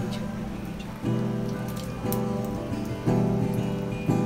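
French toast sizzling and crackling in butter in a frying pan, under acoustic guitar background music whose chords change about once a second.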